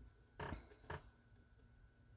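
Quiet, with two short creaks from handling the ukulele, its fretting-hand fingers shifting on the strings, about half a second in and again just before one second.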